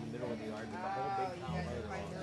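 Worship singing through a PA: a man's voice holding a wavering note over guitar accompaniment, with sustained low notes that change about one and a half seconds in.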